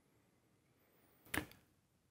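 Near silence: quiet room tone in a pause of speech, with one short, soft breath sound from the speaker about one and a half seconds in.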